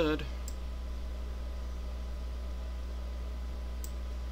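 Two faint computer mouse clicks, one about half a second in and one near the end, over a steady low electrical hum.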